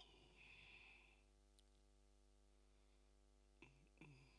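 Near silence: a steady, faint electrical hum, with a brief faint rush of noise at the start and a short faint sound just before the end.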